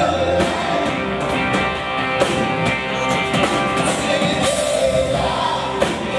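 Live rock band playing, with a man singing lead over electric guitars and a violin.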